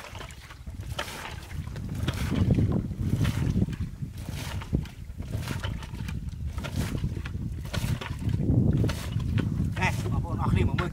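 Muddy water being scooped up and poured out with a plastic bucket, splashing and sloshing, as a shallow pool is bailed out by hand. The pours come in waves, loudest a few seconds in and again near the end.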